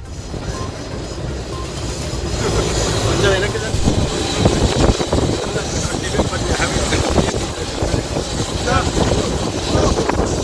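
Outdoor crowd noise: many people talking indistinctly and moving about close by, over a steady background hum with a faint high whine, swelling in over the first couple of seconds.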